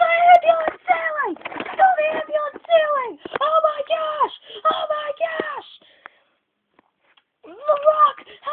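A boy's excited, unintelligible voice in a run of short yells, many falling in pitch; it breaks off for about a second and a half around six seconds in and starts again near the end.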